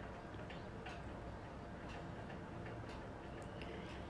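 Low, steady room hum with faint ticks scattered irregularly through it.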